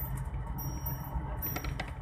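Steady low rumble of a moving vehicle heard from inside its cabin, with a few faint light clinks near the end.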